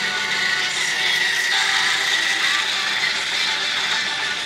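Battery-powered Percy toy engine's motor whirring as it pulls a truck and a Chuggington chugger along plastic track, loudest in the middle as the train comes close, over a song playing from a laptop.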